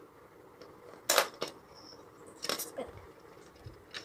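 Sharp clicks of plastic Lego pieces: one loud click about a second in, a smaller one just after, and a couple more around two and a half seconds in, as a homemade Lego spinning top is handled and set spinning on a Lego baseplate.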